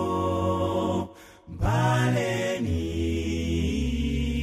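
A male gospel vocal group singing in sustained close harmony over a deep bass voice. The singing breaks off for about half a second a second in, then resumes.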